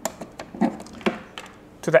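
Several light clicks and taps as an Ethernet patch cord's plastic RJ45 plug is handled and pushed into a port on a small network switch.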